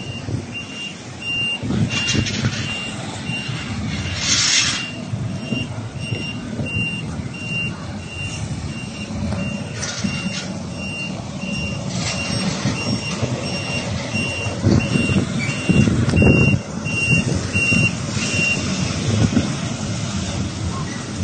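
Coach reversing alarm beeping steadily at one fixed pitch over the low running of the coach's diesel engine, with a short hiss about four seconds in. The beeping stops shortly before the end.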